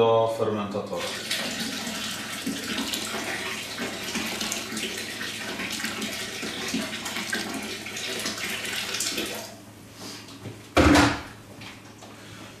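Water running from a kitchen tap into a plastic fermenting bucket, a steady rush that fades out about two thirds of the way in. A short loud thump follows near the end.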